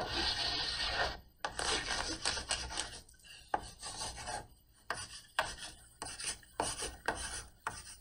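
Chalk writing on a blackboard: a run of short scraping strokes with brief pauses between them. The longest and loudest stroke comes in the first second.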